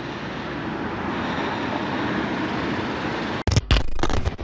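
Steady hiss of outdoor traffic noise, growing a little louder, then broken near the end by a few abrupt low thumps and cut-outs.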